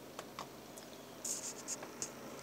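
Handling noise from the handheld camera: a few light clicks, then short scratchy rubbing as fingers take hold of it, over a faint steady hum.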